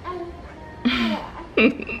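A woman chuckling and laughing in short bursts, the loudest about a second in and again near the end.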